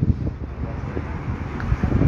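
Wind noise on the microphone over general outdoor street background, heaviest in the low range, with no clear single event.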